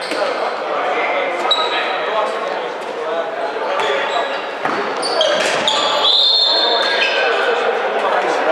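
Indoor handball game in an echoing sports hall: a handball bouncing and thudding on the wooden court, high-pitched squeaks, and players' shouts and voices. The longest high squeak comes about six seconds in and lasts about a second.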